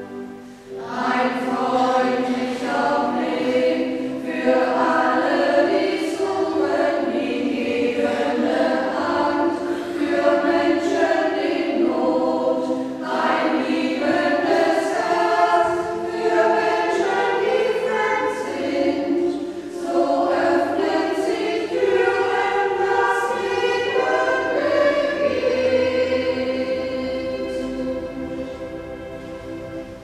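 Choir singing a sacred song, the voices entering about a second in after a brief pause.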